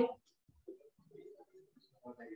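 Faint, low, dove-like cooing in a few short notes.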